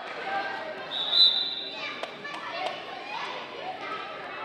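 Players' and spectators' voices echoing in a gymnasium, with a referee's whistle blown once, a steady shrill tone, about a second in. A few sharp knocks of the volleyball bouncing on the hard floor follow.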